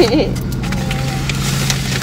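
The tail of a woman's laugh, then the steady low hum of an idling car heard from inside the cabin, with faint rustling of a paper food bag.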